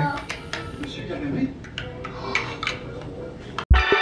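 Large plastic toy building blocks clicking and clacking now and then as children stack them, with a faint child's voice. Near the end the room sound cuts off and loud electronic music with a beat starts.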